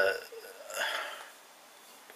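A man's voice trails off on a word, then he makes a short, soft throaty sound in the pause before going on talking.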